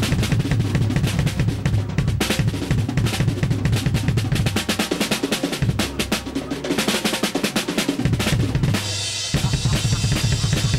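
Rock drum kit played live, fast and hard: rapid bass drum and snare hits with cymbals, a dense run of strokes like a drum roll, with the low end dropping out briefly near the end before the beat comes back in.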